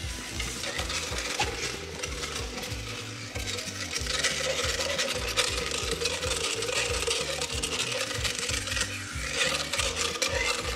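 Background music with a steady, stepping bass line. From about three seconds in, a motorized equine dental float grinds and rasps a pony's teeth over a steady motor whine.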